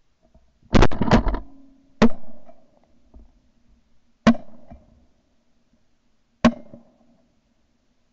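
Shotgun shots heard through a camera mounted on the gun barrel: a quick cluster of two or three shots just under a second in, then single shots at about two, four and six and a half seconds. Each is sharp and very short, with a brief ring after it.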